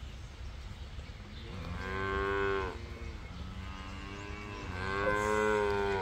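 A calf mooing twice: two long calls, the first about a second and a half in and the second, longer, from about four seconds in.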